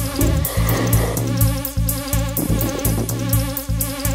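Techno track with a steady four-on-the-floor drum-machine kick, about two beats a second, and hi-hats. A dense, buzzing synth texture swells over the middle of the mix in the first three seconds, then gives way to the steady synth tones again.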